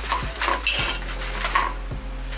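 Light metal clinks and knocks of small grill parts and hardware being picked up and handled, about five separate strikes spread through the two seconds.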